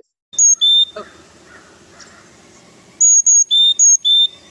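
Recording of a Carolina chickadee's song played back: clear whistled notes alternating high and low, a short two-note phrase about half a second in, then a quicker high-high-low-high-low run near the end.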